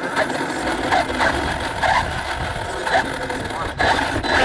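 Indistinct voices of people close by, with a low rumbling noise underneath.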